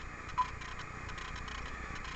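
A single short beep from the Icom IC-7000 transceiver's key-press tone about half a second in, as a frequency is keyed in. Under it are a low steady hum and faint ticking.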